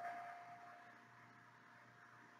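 Near silence: faint room tone, with a thin steady tone that fades out within about a second.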